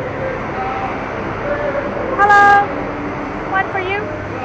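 A horn toots once, a single steady note about half a second long, a little over two seconds in, over a steady hum of city traffic.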